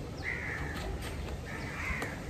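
A crow cawing twice, two harsh calls about a second and a half apart. A couple of light knife taps on a wooden cutting board come between them as tomato is sliced.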